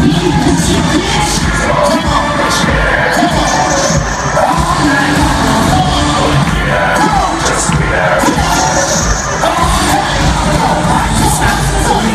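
Live rap concert music played loud over a stadium PA, with a crowd cheering, as picked up by a phone among the audience.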